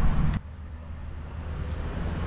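Wind rumbling on the microphone, cut off suddenly about half a second in, leaving a quieter low steady hum.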